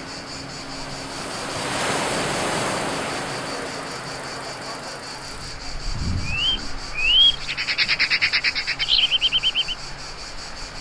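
A broad rush of noise swells and fades about two seconds in, over a faint steady hum. Later a songbird gives two short rising chirps, then a fast trill of repeated notes, about ten a second, that stops near the end.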